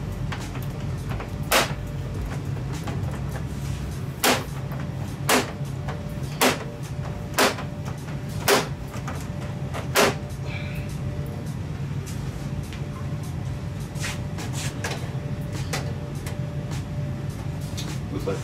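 Plastic snap clips on the back cover of a Samsung UN55NU7100FXZA LED TV popping loose one after another as a pry tool is slid along the cover's edge. Sharp clicks come about once a second for the first ten seconds, then a few fainter ones, over a steady low hum.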